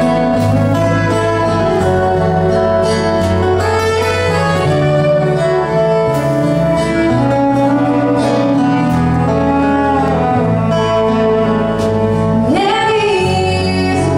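Live country band playing an instrumental break: fiddle leading over acoustic guitar, electric bass and drums. A woman's singing voice comes back in near the end.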